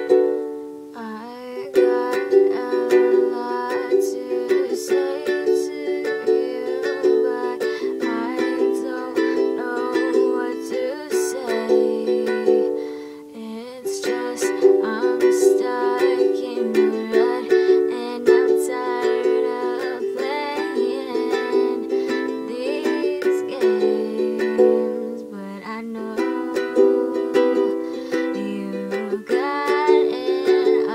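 Acoustic ukulele strummed in a steady rhythm, with chords changing every few seconds and the strumming letting up briefly about a second in and again near the middle.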